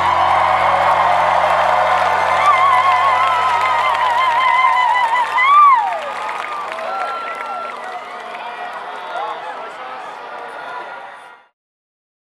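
A large festival crowd cheering and whooping as the band's final sustained chord rings out and dies away about five seconds in. The crowd noise then fades out shortly before the end.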